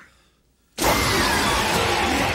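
Jump-scare sound effect from a horror film soundtrack: about three-quarters of a second of near silence, then a sudden loud, rough, noisy burst that holds.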